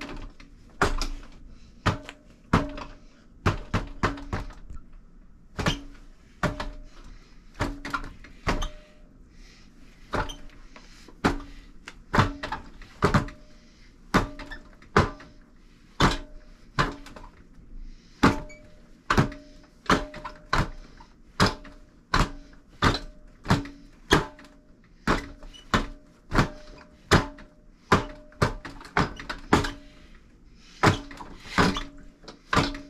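Hands and forearms striking the arms and body of a four-armed Wing Chun wooden dummy: a running string of sharp wooden knocks, about one to two a second and sometimes in quick pairs. Many knocks leave a short, low hollow ring.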